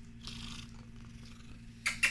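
A hairless Sphynx cat purring steadily close to the microphone, with a brief rustle of handling about a quarter second in and a sharp knock against the phone near the end.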